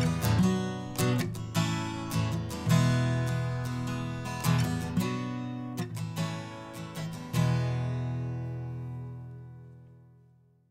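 Instrumental outro of a song on strummed acoustic guitar, ending on a last chord about seven seconds in that rings and slowly fades away.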